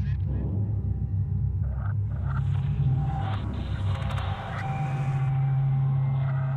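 Cinematic soundtrack of deep, steady rumbling drone, with a hissing sound-effect swell through the middle.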